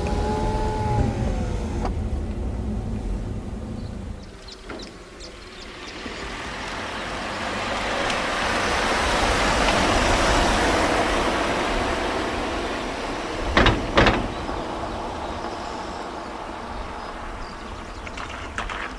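Low road rumble heard from inside a moving car, then a small hatchback car driving past, its engine and tyre noise swelling to a peak and fading away. Two sharp thumps follow a few seconds after it passes.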